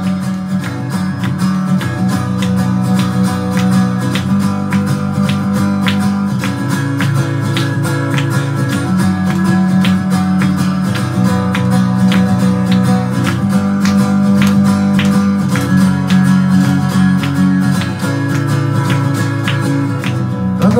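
Steel-string acoustic guitar (Time Machine Series CJFG 1957) strummed in a steady rhythm of chords, about two strokes a second, as an instrumental passage with no singing.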